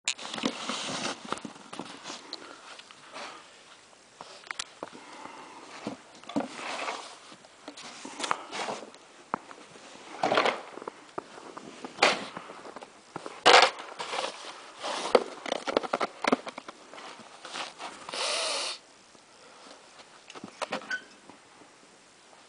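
Snow shovel at work: an irregular run of short scrapes and scoops as the blade is pushed through snow and across paving, with a longer scrape near the end.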